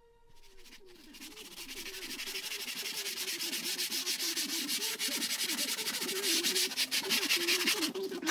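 Hand file rasping along the edge of a formica-laminated locker door in quick, short strokes that build louder over the first couple of seconds.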